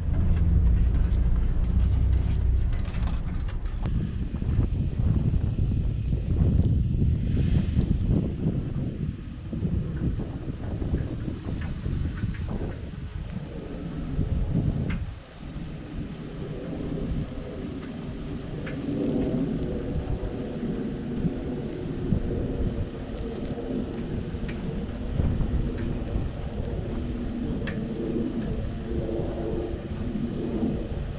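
Toyota Tundra pickup truck running as it slowly reverses a boat trailer across grass, heard under a loud low rumble of wind on the microphone. The sound dips briefly about halfway through, then the engine settles into a steady hum.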